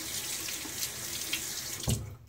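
Bathroom sink tap running steadily into the basin; the water stops with a short knock just before the end.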